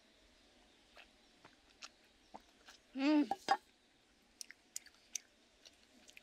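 Drinking and eating sounds: light mouth clicks and small sips from a metal camping pan. A short hummed vocal sound comes about three seconds in, right before a sharp click, and a few more light clicks follow.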